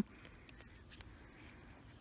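Faint scraping with a few light ticks: a knife blade cutting soft potassium metal inside a small plastic bottle.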